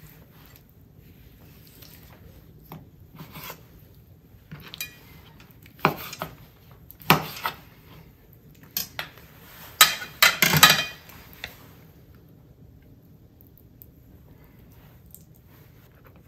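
Scattered clicks and clinks of a flat metal kebab skewer and a knife against a wooden cutting board and a plate as kidney pieces are threaded onto the skewer, with a cluster of louder clinks about ten seconds in.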